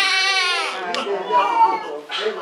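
Infant crying: one long, high cry that falls in pitch and breaks off a little under a second in, followed by shorter cries.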